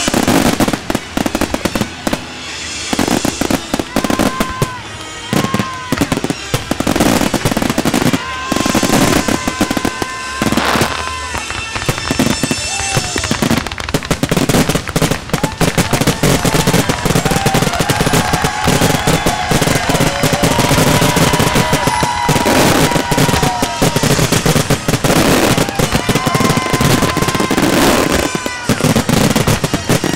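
A fireworks display in a dense barrage: aerial shells burst in rapid, overlapping bangs with crackling, almost without a pause.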